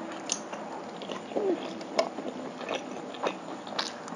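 Close-up chewing of spicy instant noodles, with irregular wet mouth clicks and smacks; the sharpest click comes about two seconds in.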